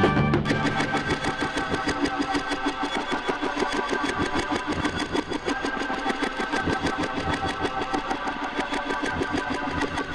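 A passage of late-1960s rock played from a vinyl LP. About half a second in, the bass drops away, leaving a fast, even pulsing texture with sustained pitched tones over it.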